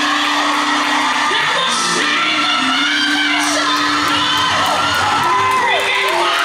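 Gospel song with singing, carrying a long held low note, while the congregation whoops and cheers over it toward the end.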